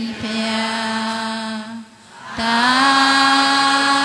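Burmese Buddhist devotional chanting in long held notes at a steady pitch: one drawn-out phrase, a short breath-gap about two seconds in, then the next phrase rising in and held.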